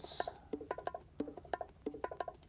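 Sampled conga drum loop playing, quick evenly paced hits, with a compressor on it that brings up the quieter hits so the congas sound louder overall.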